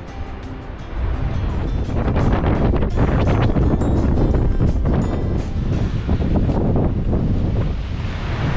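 Strong wind buffeting the microphone, a loud low rumble in gusts, coming up about a second in as the background music fades out.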